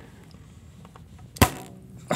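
A large rubber band stretched and let go, snapping once down onto a peeled banana and a wooden cutting board about one and a half seconds in, with a brief ringing after the snap.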